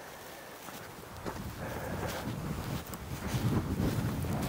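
Footsteps through dry heather and grass, a few soft crunches, with wind rumbling on the microphone that builds from about a second in.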